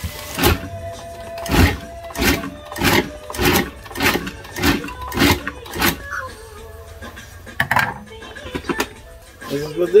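Countertop food processor pulsed in about nine short bursts, shredding cooked chicken breast coarsely, then stopping.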